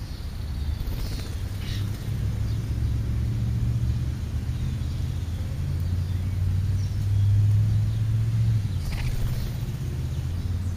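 A steady low rumble, most likely a motor vehicle engine, that swells about seven seconds in and eases off again. A few faint, short, high bird calls sound over it.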